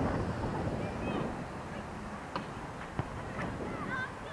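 Wind buffeting the microphone, a steady rushing noise, with a short sharp knock about three seconds in.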